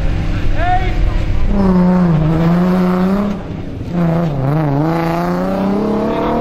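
Nissan 350Z rally car's V6 engine working hard, its note falling and rising twice as the driver comes off and back on the throttle, with a couple of short squeals in the first second.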